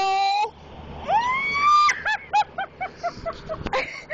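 Girls screaming in fright: a long high scream cuts off about half a second in, a second scream rises in pitch around a second in, then a run of about eight short high shrieks follows until near the end. A passing car rumbles low underneath.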